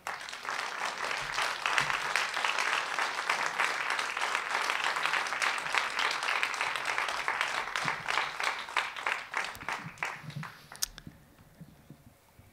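Audience applauding: the clapping breaks out all at once, holds steady, then dies away with a few last claps near the end.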